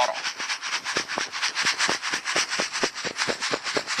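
Dry gravel and dirt rattling and sliding in a green plastic gold pan as it is shaken back and forth in quick strokes, several a second: dry-panning without water.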